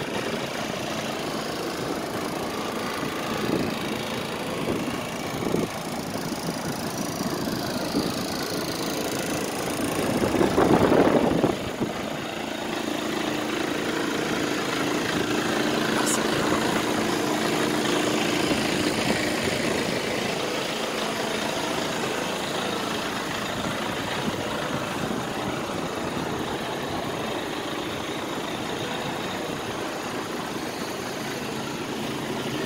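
Iveco Stralis Hi-Way 460 tractor unit's six-cylinder diesel engine idling steadily, with a brief louder rush of noise about ten seconds in.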